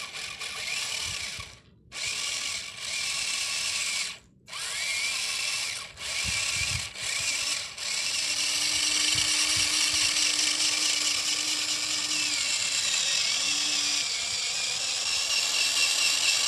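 Small electric motor of a miniature model tractor whining in short runs of a second or two with brief stops between them, then running without a break from about eight seconds in. A lower steady hum joins for a few seconds partway through.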